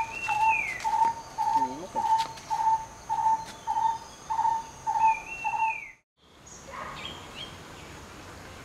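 Birds calling: one bird repeats a short, even-pitched note about two to three times a second, while a longer falling call sounds twice. A faint steady high tone runs beneath. The calls stop abruptly about six seconds in, leaving quieter outdoor ambience with faint chirps.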